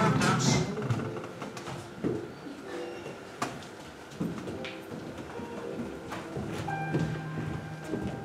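Quiet stage scene change: transition music trails off at the start, then a low murmur of voices with three sharp knocks in the middle.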